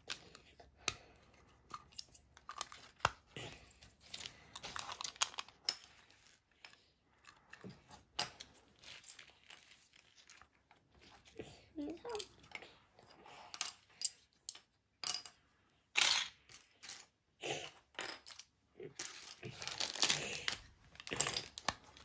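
Plastic LEGO bricks being handled and pressed together, with loose pieces clattering on a wooden tabletop: a string of small irregular clicks and rattles, busier and louder in the last third.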